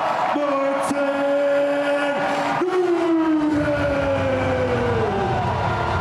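A man's amplified voice over the arena PA, drawing out long syllables in the style of a ring announcer's winner call, over crowd noise. The held notes slide and fall, and a low beat of music comes in about halfway through.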